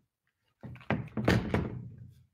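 A few dull thumps and knocks with rustling, starting just over half a second in. It is handling noise from someone moving close to the microphone.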